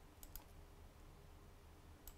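Near silence with two faint computer keyboard clicks about a quarter of a second in.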